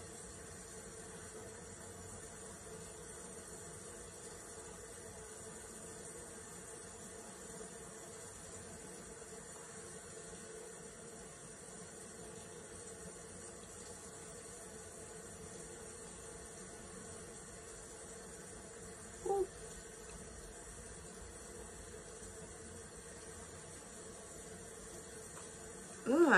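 Faint, steady room tone: a constant hiss with a low electrical hum, and one brief soft sound about nineteen seconds in.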